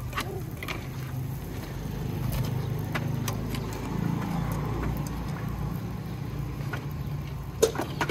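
Thin wooden crate slats being broken apart by hand, giving a few sharp cracks, the loudest near the end, over a steady low rumble that swells in the middle.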